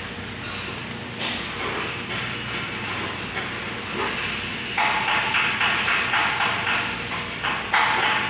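MIG welding arc crackling steadily as a bead is laid on a steel box-section frame. The crackle grows louder and denser from about five seconds in until near the end.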